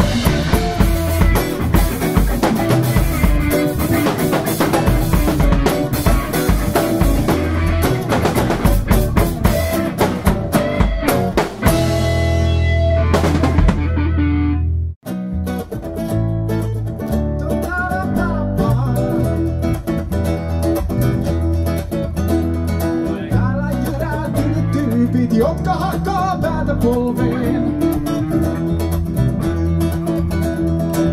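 Recorded folk-rock band music with drum kit, guitar and double bass: one song plays out and ends about halfway, with a moment of silence, and the next song starts.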